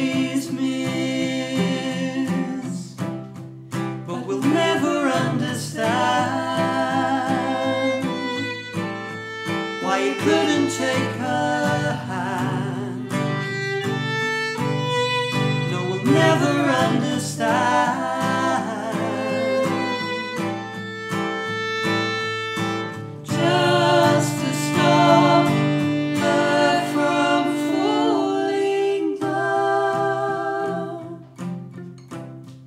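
Fiddle and acoustic guitar playing a folk song together, the fiddle carrying long wavering lines over the guitar's chords, with a man's singing voice joining at times.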